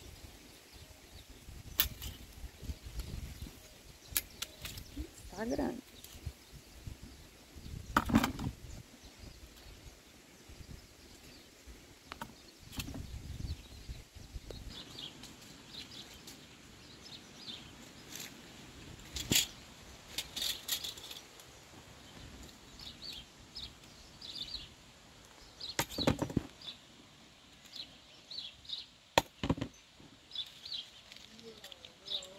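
A long-handled grabber tool picking up fallen citrus fruit among dry leaves: scattered clicks and knocks of the tool's jaws and the fruit, with rustling of the leaf litter and a low wind rumble on the microphone. From about halfway through, short high bird chirps come in repeated little bursts.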